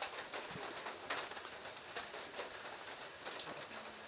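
Rain falling steadily: a faint, even hiss with a few scattered light ticks.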